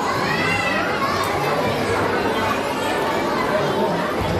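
Many children's voices talking and calling over one another at once, a steady unintelligible chatter with no single voice standing out.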